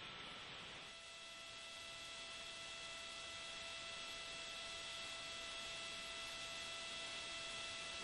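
Faint steady electronic hiss and hum on the launch-commentary audio feed between radio calls. Several thin steady tones come in about a second in.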